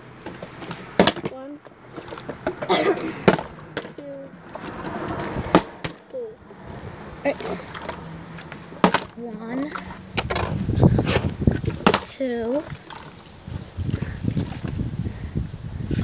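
Plastic water bottle being flipped and landing with several sharp knocks on a wooden porch step, among children's brief, unclear voices. A low rumble fills the second half.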